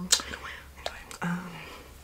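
A woman's soft whispered vocal sounds, opening with a sharp hiss, with a single click a little under a second in and a short hummed "mm" a bit later.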